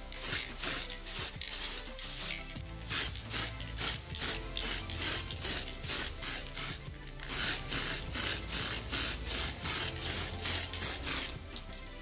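Aerosol can of metallic copper spray paint sprayed in many short hissing bursts, about two or three a second, laying down light coats.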